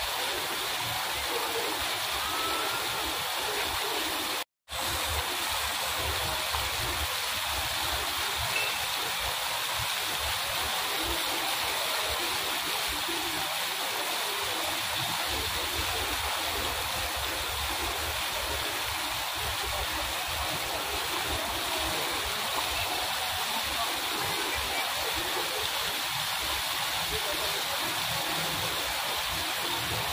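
Fountain jets spraying water that falls back onto the pool's surface: a steady splashing hiss, with a brief complete dropout about four and a half seconds in.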